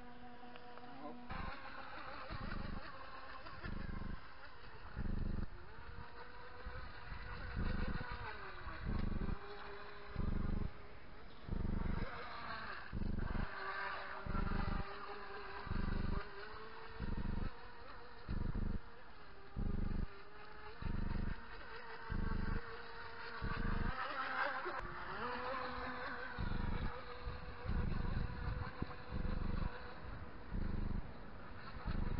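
Radio-controlled model boat's motor buzzing across the water with a thin whine whose pitch rises and falls as it changes speed, about twelve seconds in and again about twenty-four seconds in. Under it, a regular low pulse about once a second, louder than the motor.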